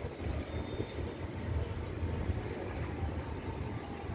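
Steady low outdoor rumble of riverside city background, with no distinct events.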